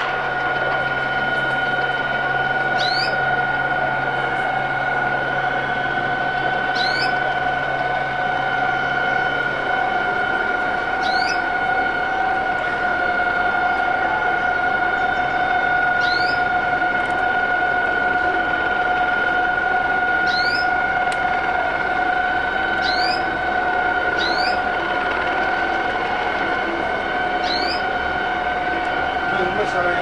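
A continuous steady high tone, like an alarm, holds unbroken throughout, with a short high rising chirp every three to four seconds and a low hum that stops about a third of the way in.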